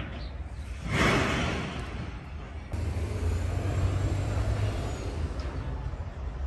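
Leaves and branches brushing and rustling as someone pushes through dense scrub, loudest about a second in, followed by a steady low rumble.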